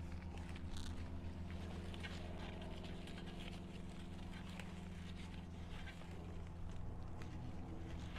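Faint rustling and crackling as hands press loose potting soil around a hibiscus in a terracotta pot and brush its leaves, over a steady low hum.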